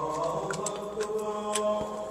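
A man's voice chanting Arabic through the mosque loudspeaker system, drawing out one long melodic note that stays mostly steady in pitch, with a few faint clicks.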